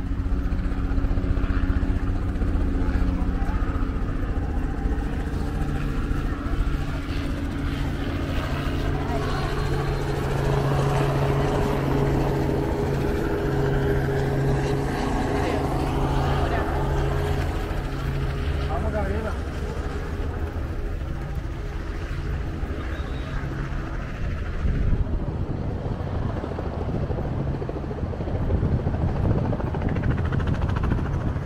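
A steady engine drone, a low hum with a few higher tones above it, loudest in the middle and dying away about twenty seconds in, under people talking.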